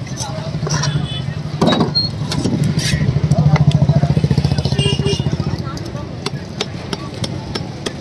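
An engine running close by, swelling to its loudest midway and fading out after about six seconds. Over it, sharp taps and scrapes of a long knife scaling a rainbow runner on a wooden chopping block.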